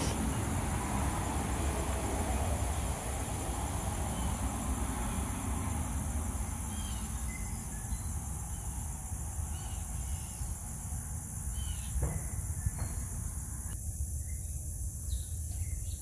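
Steady high-pitched insect drone, with a few faint bird chirps in the middle, over a low steady rumble.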